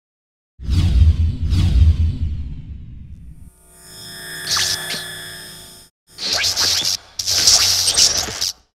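Cinematic title-sequence sound design: two falling whooshes over a deep rumbling hit starting about half a second in, dying away over a few seconds, then a ringing swell of steady tones. Near the end come two loud hissing bursts, the second cutting off suddenly.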